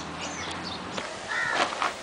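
Birds calling: a few high chirps, then a short, harsh call about one and a half seconds in.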